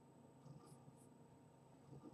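A few brief, faint scratches of charcoal strokes on drawing paper, against near silence.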